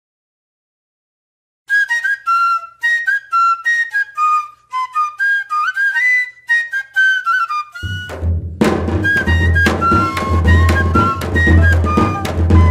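Banda cabaçal music: a pífano (cane fife) starts a melody alone about two seconds in. About six seconds later the zabumba bass drum, tarol snare and cymbal come in under it, and the fife keeps playing over a steady beat.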